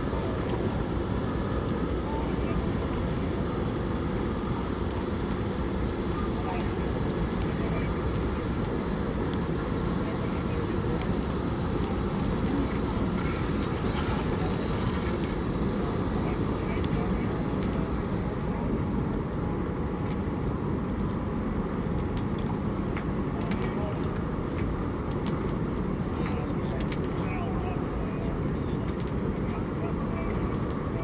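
Boat engine running at idle: a steady, even low rumble.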